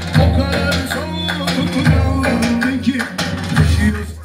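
Loud live dance music: a melody that wavers and slides in pitch over heavy, sustained bass, played on an electronic keyboard through loudspeakers.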